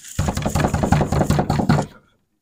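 Fist pounding on a wooden dorm room door: a rapid string of knocks, several a second, lasting nearly two seconds.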